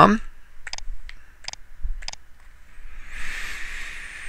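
Computer mouse clicking four times, sharp and short, over about a second and a half while zooming out with Photoshop's zoom tool. A soft hiss follows about three seconds in and lasts nearly a second.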